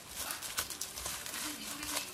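Plastic cling film crinkling and rustling in irregular crackles as hands press and pat a ball of cookie dough wrapped in it inside a stainless steel bowl.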